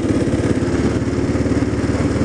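Motorcycle engine running at a steady pace while riding, heard from on the bike, with a constant note and even firing pulses.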